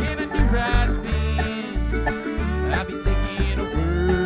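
Live acoustic bluegrass band playing an instrumental passage: banjo, mandolin, fiddle, acoustic guitars and resonator guitar over an upright bass keeping a steady beat, with a bending melody line over the chords.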